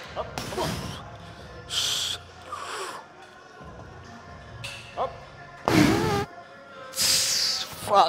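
A man breathing forcefully through reps on a chest-press machine: several short, hissing exhales and a louder strained grunt about six seconds in, over background music.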